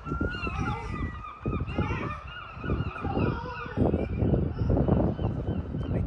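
A yellow sausage-shaped toy balloon flying free as its air rushes out through the neck, giving a high, wavering squeal that stops about three and a half seconds in. Low rumbling knocks run underneath.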